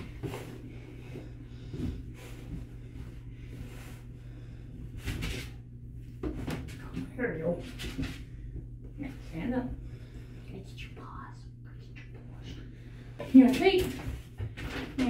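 A towel rubbing and rustling over a freshly bathed dog's wet coat in short bouts, with a few soft knocks, over a steady low hum.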